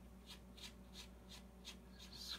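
Near silence: a faint steady room hum with soft, irregular light ticks, about four a second.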